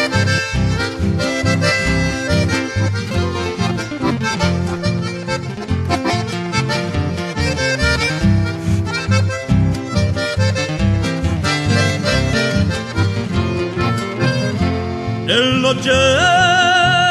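Instrumental interlude of an Argentine folk song: an accordion-led melody over guitar and a steady pulsing bass. Singing voices with a strong vibrato come in just before the end.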